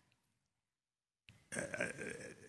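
Near silence for over a second, then a man's throaty, hesitant 'uh' near the end.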